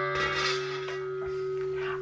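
Stainless steel cookware ringing after a knock, a bell-like tone with several overtones that hangs on and fades slowly.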